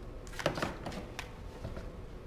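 Cables and connectors being handled: a few soft clicks and knocks over a low steady hum.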